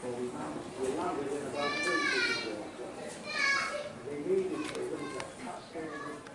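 Indistinct chatter of several people, with a child's high-pitched voice calling out twice, about two seconds and three and a half seconds in.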